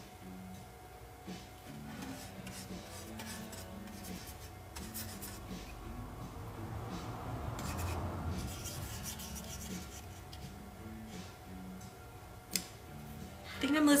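Paintbrush strokes rubbing and scraping on a wax-coated encaustic panel, growing louder around the middle, over faint background music.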